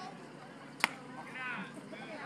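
A single sharp pop of a pitched baseball smacking into the catcher's leather mitt, a little under a second in. Spectators shout right after it.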